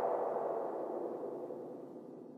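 Final synthesizer tone of a progressive trance track ringing out in a long echoing tail with no beat, fading steadily away.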